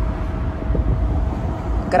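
Steady low rumble of a car's engine and road noise heard inside the moving cabin, with a faint, thin, steady hum held throughout.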